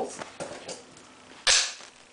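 A single sharp click about one and a half seconds in as the plastic screw lid comes off a glass jar of hazelnut spread.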